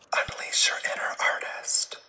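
A person whispering in short breathy phrases, with no voiced pitch, stopping just before the end.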